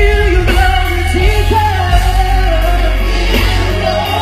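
Live amplified singing over steady bass-heavy accompaniment, a woman's voice carrying a wavering melody line through a PA system.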